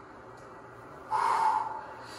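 A person's single sharp, breathy exhale about a second in, lasting about half a second.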